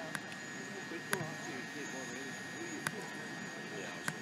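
Faint, distant chatter of people's voices over a steady high-pitched whine, with three short sharp clicks.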